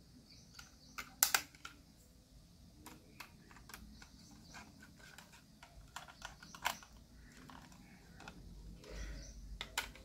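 Faint, irregular small clicks and ticks of a screwdriver turning screws into the metal mounting bracket of a 2.5-inch SATA SSD, with a sharper click about a second in and another near seven seconds.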